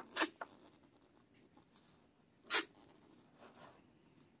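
Very young kitten with a blocked nose from a lingering upper respiratory infection sneezing: a short sharp sneeze at the start and a louder one about two and a half seconds in.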